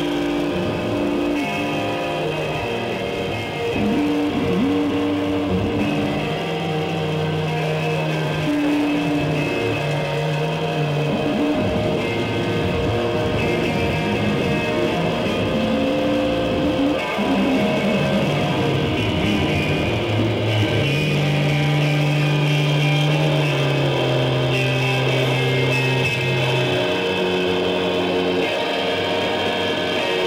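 Live rock band playing, with electric guitar, bass guitar and drums. Long held bass notes change every second or two under a dense wash of guitar.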